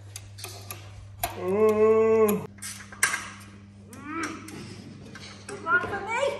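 Adjustable spanner clinking against metal fittings in an engine bay: a series of sharp metallic clicks and taps. Over it a voice holds one steady note for about a second, starting about a second and a half in, with brief vocal sounds later.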